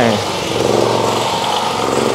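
A small engine running steadily, under a continuous hiss of rain on tarpaulin.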